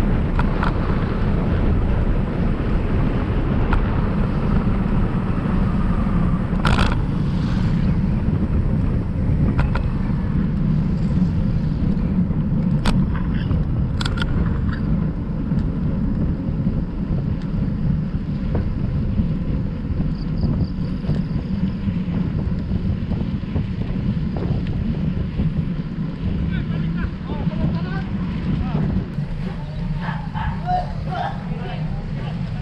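Wind buffeting the microphone and tyre rumble while riding a bicycle along a concrete road: a loud, steady low rumble, with a few sharp clicks in the middle.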